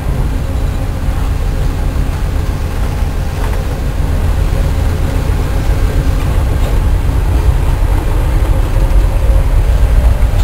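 Steady low rumble of a moving train heard from inside a diesel locomotive cab, the engine and wheels on rail running together, getting a little louder near the end.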